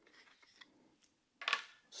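Faint small clicks of plastic and metal parts as the trigger is pushed out of a Steambow Stinger Compact crossbow pistol's frame. A short, louder scrape comes about one and a half seconds in.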